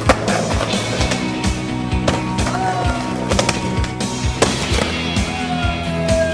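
Skateboard rolling and clacking on concrete, with several sharp board impacts, the loudest right at the start. Music with a steady beat plays throughout.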